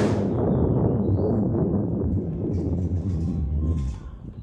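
Wind on the microphone of a moving electric bike: a loud, steady low rumble with a short gust at the start, which drops away suddenly near the end.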